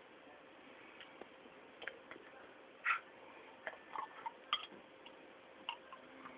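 Faint, irregular clicks and scrapes of teeth gripping and prying at a bottle cap, with the bottle knocked against the teeth. The loudest click comes about three seconds in.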